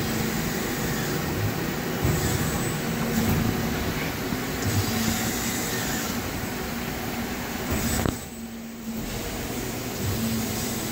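Cincinnati Milacron Magna MTS 55 hydraulic toggle injection molding machine running through its cycle. A steady mechanical hum from its hydraulic power pack has a tone that comes and goes with a few low thumps. The sound drops suddenly for about a second near eight seconds in.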